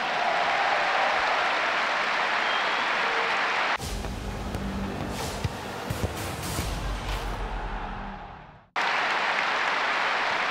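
Stadium crowd applauding. About four seconds in, it is cut off by a short music sting with a heavy bass and a few sharp hits, which fades out and stops abruptly. Near the end the crowd applause returns.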